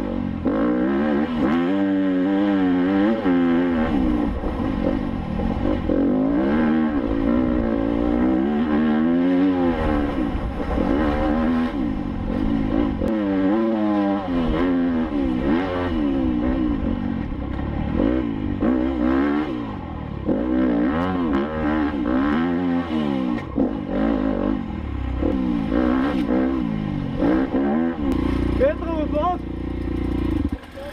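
Enduro dirt bike engine heard close up from the rider's helmet camera, revving up and down repeatedly as the throttle is worked over rough quarry track and steep climbs.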